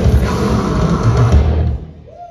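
Live metal band playing loud, with pounding drums and heavily distorted guitars and bass, stopping suddenly near the end as the song ends.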